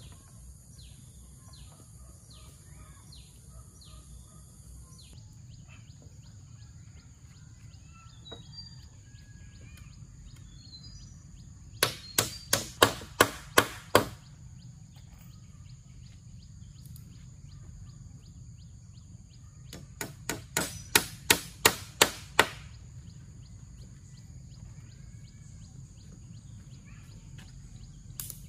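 Steel hammer driving nails into wooden poles: two quick runs of about eight to ten ringing blows each, about twelve seconds in and again about twenty seconds in. A steady high insect drone and some bird chirps sound behind them.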